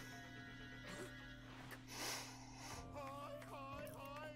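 Faint anime soundtrack: quiet music, then from about three seconds in a high, wavering, sing-song voice of a character calling out.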